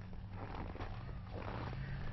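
Low steady hum with a faint rumble and hiss underneath: outdoor background noise between spoken remarks.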